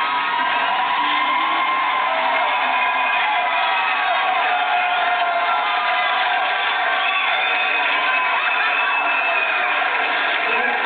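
Audience cheering and whooping, many voices shouting at once.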